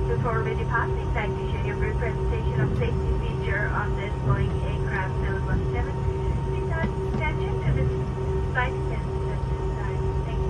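Steady cabin hum of a Boeing 717-200 parked at the gate, a low drone with two constant whining tones, under indistinct murmuring voices of people in the cabin.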